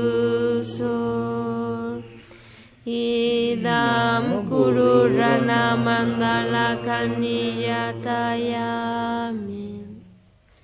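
Chanting of a Tibetan Buddhist mantra in long, sustained notes. It breaks off briefly about two seconds in, resumes, and fades out at the end.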